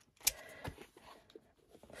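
Sharp plastic clicks from the sliding latches of a clear plastic compartment storage box being worked: a louder click about a quarter second in and a softer one soon after, with faint handling of the box.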